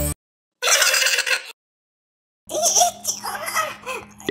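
Cartoon character voice effects with no music: a short burst about half a second in, then a longer strained, voice-like sound from halfway through.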